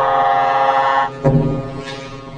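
A loud, steady horn-like drone cuts off about a second in. Right after it comes a heavy thud as a man's head hits a tabletop.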